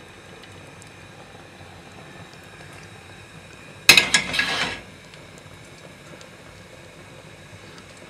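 Borscht broth boiling in a large stainless steel pot on a gas stove, a steady low bubbling hiss. A short, sharp clatter about four seconds in.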